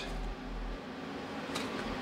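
Low, steady background noise in a pause in the talk, with a low hum in the first moments.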